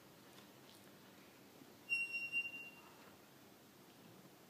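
A single steady high-pitched tone, like a whistle or electronic beep, about two seconds in, lasting about a second and wavering in loudness, over quiet hall room tone.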